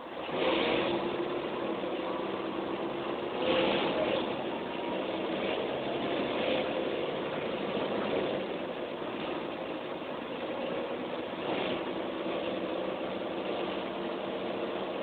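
Mercedes-Benz O405N bus engine, heard from inside the passenger saloon, rising from idle as the bus pulls away and then running steadily under way, with a swell in engine noise about three and a half seconds in and again near the end.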